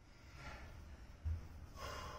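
A man breathing out twice, a faint breath about half a second in and a louder one near the end, with a soft low thump in between.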